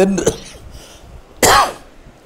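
A man's single short cough about one and a half seconds in.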